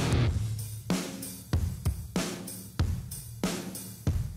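Live rock band on drum kit and electric guitar: a held band sound cuts off, then about five hard accented drum hits with cymbal crashes follow, roughly two-thirds of a second apart, with the sound dying away between each.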